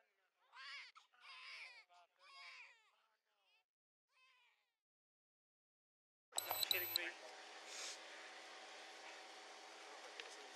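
A voice speaking briefly, then near silence, then police body-camera audio cutting in suddenly with a short clatter and high tones, settling into a steady outdoor hiss with a low hum underneath.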